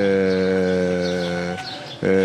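A man's voice holding one long, steady hesitation vowel, a drawn-out 'eeh' filler in mid-sentence, that fades out about one and a half seconds in.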